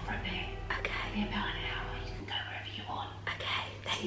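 A woman whispering close to the microphone, with music playing quietly under it.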